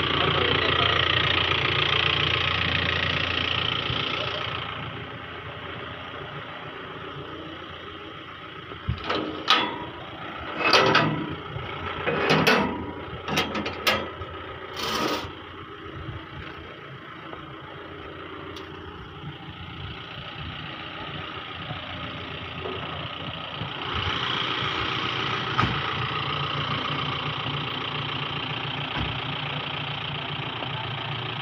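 SUV engine idling steadily, louder for the first few seconds and again from about 24 seconds in. A handful of short, loud sounds break in between about 9 and 15 seconds.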